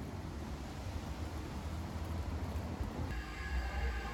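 Low steady rumble and faint hiss of outdoor ambience on a handheld phone microphone. About three seconds in, faint background music with steady held tones comes in.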